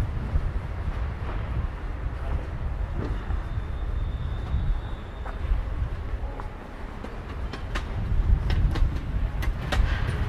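City street ambience: a steady low rumble with a faint high whine for a couple of seconds in the middle, and a run of sharp clicks and clatter in the last two seconds.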